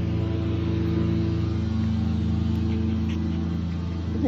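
Lawn mower engine running steadily, a constant hum at an even pitch.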